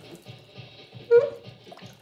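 Kitchen sink tap running water, with a short, loud, pitched noise from the tap about a second in: an unusual new noise from the tap.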